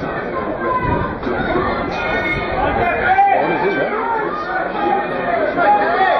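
Trackside spectators' voices, many people talking and calling out over one another.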